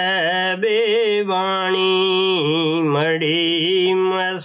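A man's voice chanting in long, drawn-out sung notes with a wavering pitch, pausing briefly a few times.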